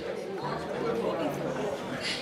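Low background chatter of several people talking at once, with no single voice standing out.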